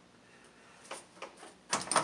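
Light metal clicks as the hood latch and its bolts are handled and lined up on the radiator support: two small clicks about a second in, then a louder brief clatter near the end.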